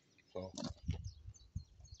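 A single spoken word, then faint outdoor quiet with a few short bird chirps and light knocks from handling things on a wooden bench.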